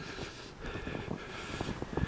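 Low wind noise on the camera microphone, with soft, irregular thumps from footsteps walking through snow.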